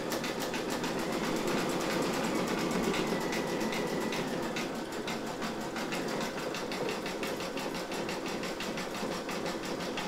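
Brother Innovis V5LE sewing and embroidery machine stitching in embroidery mode, the needle running in rapid, even strokes through vinyl in the hoop.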